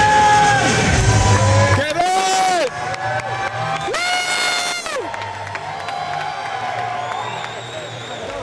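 Loud music over a hall PA with a heavy bass beat that drops out about two seconds in, over a crowd cheering. Long held shouts ring out near the microphone about two and four seconds in.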